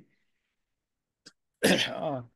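Silence for over a second, a faint click, then a brief burst of a person's voice that falls in pitch, heard over a video-call line.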